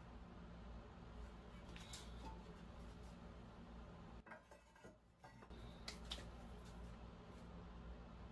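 Near silence over a low steady hum, with a few faint light clicks, about two seconds in and again around six seconds: ceramic kiln posts and shelves being handled inside an emptied electric kiln.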